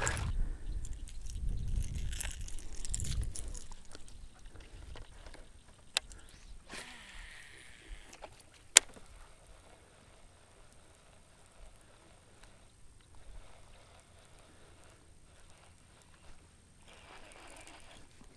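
Low-profile baitcasting reel being cast: a sharp click about six seconds in, a brief whir of line leaving the spool, and a louder click about three seconds later as the reel re-engages. Before it, faint low rumbling from handling and water against the boat; afterwards, faint.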